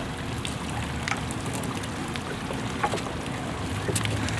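Steady splashing of a tiered water fountain, with a few faint clicks and a sharper click near the end.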